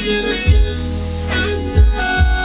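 Keyboard synthesizers playing sustained chords over a beat with a deep, steady bass line, with two heavy low thumps in the beat.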